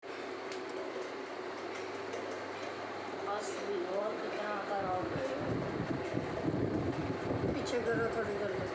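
Steady room noise with faint voices talking in the background, the low end growing busier about halfway through.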